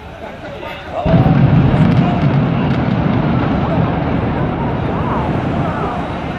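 Sudden loud, deep rumble of a high-rise tower collapsing in a demolition implosion. It starts about a second in and runs on steadily as the structure comes down, with crowd voices faintly over it.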